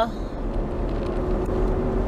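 Steady road noise inside a moving car's cabin: a low rumble with a faint, even hum.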